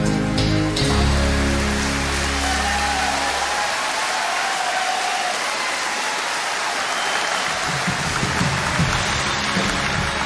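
A live folk band's held final chord rings out and fades over the first three seconds or so, while a concert audience's applause rises and carries on as steady clapping.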